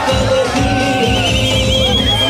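Dance song with a steady, even beat playing loudly; a high warbling line comes in about a second in.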